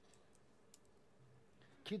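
Faint room tone with a few faint, short clicks in the first second; a man's voice starts right at the end.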